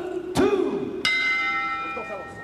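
Arena announcer's long drawn-out call of the round, then a ring bell struck once about a second in and ringing on, signalling the start of the next round of the fight.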